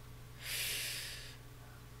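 A single audible breath close to the microphone, lasting about a second and fading out, over a faint steady low electrical hum.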